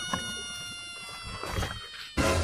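A faint, drawn-out high tone with several overtones, sinking slightly in pitch and fading out near the end.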